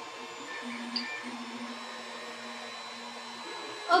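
3D printer stepper motors humming a steady low tone for about three seconds, with a brief break and a small click about a second in.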